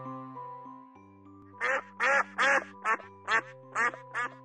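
A goose sound effect honking six short calls in quick succession, starting about one and a half seconds in, over soft background music.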